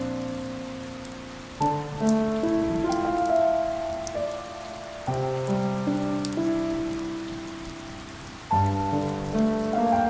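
Steady rain with scattered sharp drop taps, mixed with slow, soft instrumental music. New chords are struck about every three and a half seconds, three times, each fading away before the next.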